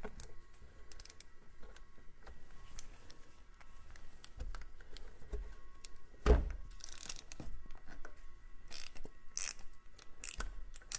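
Scattered clicks and scrapes of a cup-type filter wrench gripping and turning a spin-on oil filter to loosen it, with one louder knock about six seconds in.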